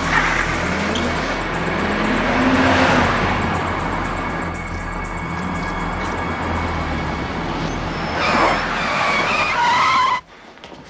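A Peugeot 607 car driven hard: the engine revs up in the first few seconds and the tyres squeal near the end as it takes a corner at speed.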